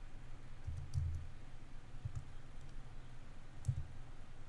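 Computer keyboard keys clicking as a few scattered keystrokes are typed, faint, over a low steady hum.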